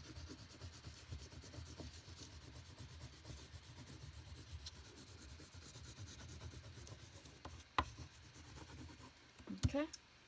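Oil pastel rubbed across paper, a faint, steady scratchy rubbing as yellow colour is laid down and blended. One sharp click about eight seconds in.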